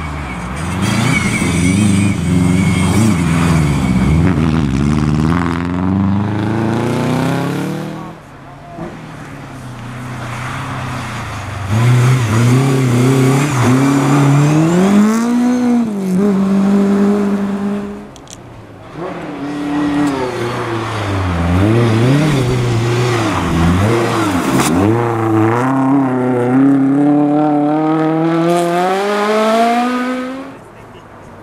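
Rally car engines revving hard as cars accelerate along a snow-covered stage, the engine note climbing again and again through the gears. The sound drops away suddenly around 8 seconds and again around 18 seconds in, before the next car is heard.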